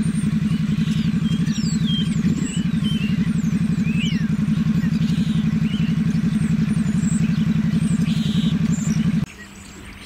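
A low engine running steadily with a fast even pulse, and above it a starling's song of thin sliding whistles and slurred notes. Both stop suddenly about nine seconds in.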